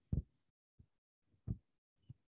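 Soft, dull thuds of a body moving on a yoga mat as the knees shift in a seated bound-angle pose, two of them about a second and a half apart with a fainter tap between.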